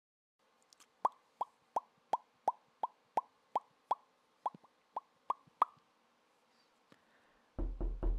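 A rapid, even series of about thirteen short, sharp pops, roughly three a second, each with a brief hollow ring, followed near the end by a louder low thud.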